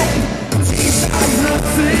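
Live rock band playing loud: electric guitars, drum kit and a male lead voice singing, with a heavy drum hit just after a brief drop about half a second in.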